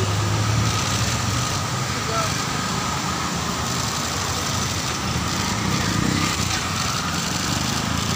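Steady road-traffic noise on a wet street, with a vehicle engine idling close by and faint voices in the background.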